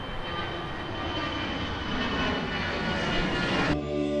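A road vehicle approaching: engine and tyre noise growing steadily louder, then cut off abruptly just before the end.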